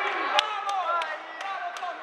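Voices of people around a grappling bout in a sports hall, with a run of about five sharp smacks, roughly three a second, in the middle.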